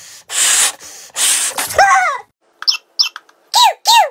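A rubber balloon being blown up by mouth: three long breathy blows in the first second and a half. These are followed by several short squeaky tones that rise and fall.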